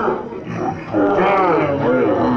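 Men shouting and yelling over one another, urging on two arm wrestlers locked in a pull, with a long, louder held shout from about a second in.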